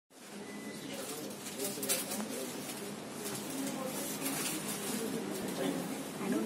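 Indistinct chatter of several people talking at once under a steady background hiss, with a few brief clicks about two seconds in.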